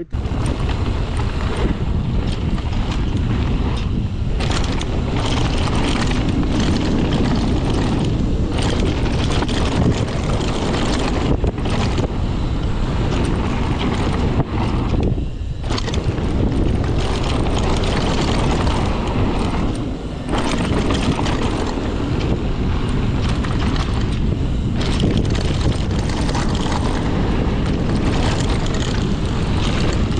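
Mountain bike descending a dry, loose gravel trail at speed: steady wind rush on the action camera's microphone mixed with tyre noise and rattling, with a few brief dips.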